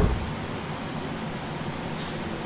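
Steady hiss of background noise, with a brief low thump right at the start.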